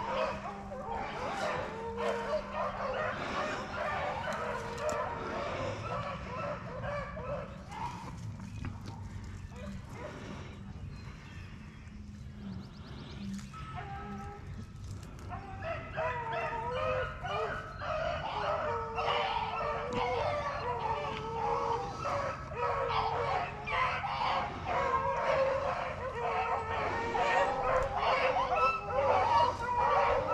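A pack of beagles baying as they run a rabbit: many overlapping cries, thinner about a third of the way in, then growing denser and louder through the second half as the pack draws nearer.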